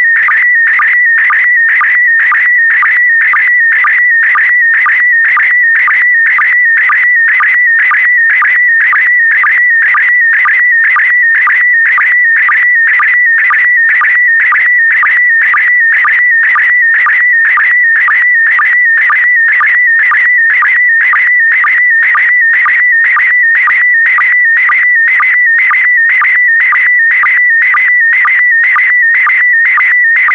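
Slow-scan television (SSTV) signal in PD120 mode sending a picture: a high, rapidly warbling electronic tone, broken by a short regular pulse about twice a second. Each pulse is the sync marking the start of the next pair of picture lines.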